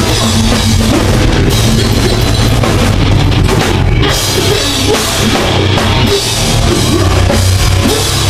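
Metal band playing loud live: distorted electric guitars, bass and a drum kit.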